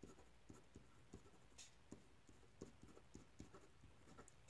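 Felt-tip marker writing a line of words by hand: faint, short strokes, several a second.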